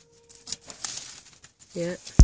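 Corn husk being pulled and torn from an ear of corn: a few short crackling rips. A brief wavering voice sound near the end, with background music trailing off at the start.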